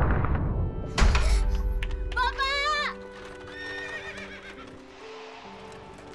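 Film trailer soundtrack: the rumble of an explosion fades, a deep boom hits about a second in, and then a high wavering cry sounds briefly over music of long held notes that grows quieter through the rest.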